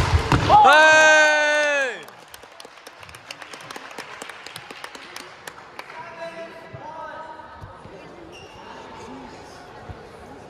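A badminton jump smash, with a sharp racket-on-shuttle hit right at the start, followed by a loud, sustained shout lasting about a second and a half that falls in pitch as it ends. After it come scattered light taps and clicks on the court and faint chatter in the hall.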